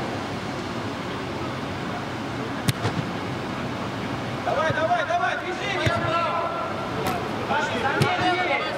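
Football players' shouts echoing in a large indoor hall over a steady background rush, with the sharp thud of a ball being kicked about a third of the way in and a couple of lighter knocks later. The shouting comes mainly in the second half.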